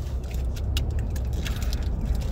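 Road and engine noise inside a moving car's cabin: a steady low rumble, with scattered light clicks and rattles.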